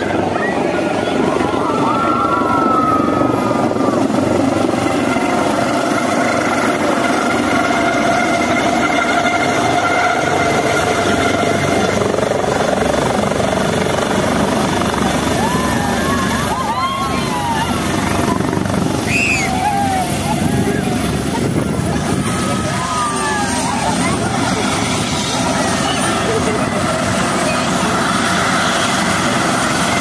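A twin-engine helicopter with a shrouded fan tail rotor comes in to land and keeps running on the ground. Its rotor noise is loud and steady, under a thin high turbine whine that dips slightly in pitch a little past two-thirds of the way through. A crowd calls and shouts over it.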